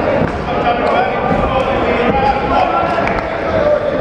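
Indistinct voices shouting in a large sports hall during an amateur boxing bout, with scattered dull thuds from the boxers moving and punching in the ring.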